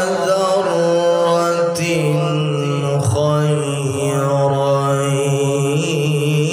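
A male qari reciting the Quran in melodic tilawah style into a handheld microphone, holding long notes with wavering ornaments and briefly pausing about two and three seconds in.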